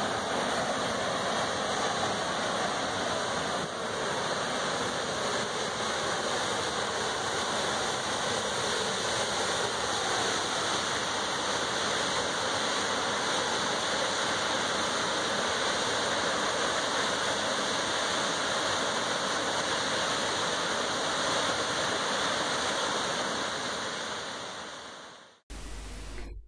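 A waterfall in full flow: steady rushing of water falling into a foaming pool, fading out near the end.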